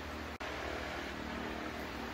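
Steady background hum and hiss of room tone, like air conditioning, with no handling noise standing out; the sound briefly cuts out under half a second in.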